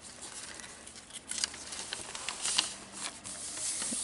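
Paper rustling as the thick, handmade pages of a junk journal are handled and turned by hand, with a few short sharp clicks and taps in the middle.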